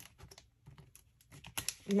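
Faint, irregular light clicks and taps from small hard objects being handled.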